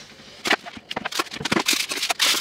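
Short, irregular clicks, knocks and rustles of flat-pack packaging being handled: plastic strapping and foam sheets pulled from a cardboard box. It starts about half a second in.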